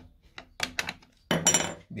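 Hand tools clicking and knocking against the screws and hinge of a homemade bag sealer's wooden arm as the screws are tightened. There are several short sharp knocks, the loudest with a brief metallic ring about a second and a half in.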